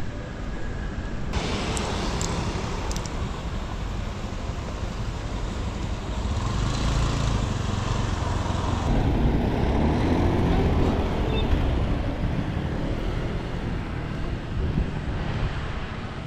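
Street traffic noise with a small motor scooter riding past, its engine growing louder toward the middle and then fading away.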